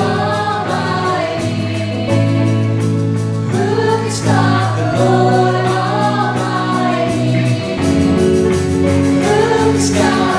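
Live worship band playing and singing a chorus: a man's lead voice with backing vocals over banjo, electric bass, drum kit and piano. The bass holds long notes that change every couple of seconds.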